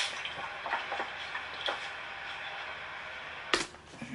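Milk running and splashing out of a plastic gallon jug onto a tile floor, a steady wash of liquid noise. A sharp click comes near the end.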